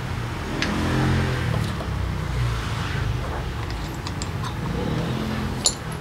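Light metallic clicks of brake pads and the brake caliper being handled and fitted, with a sharper click near the end, over the low hum of a vehicle engine running in the background.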